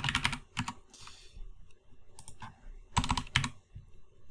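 Typing on a computer keyboard: a few short runs of key clicks as a word is typed.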